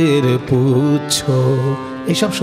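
A man singing a Bengali kirtan melody, holding long notes with a slow, wide waver in pitch and breaking briefly between phrases.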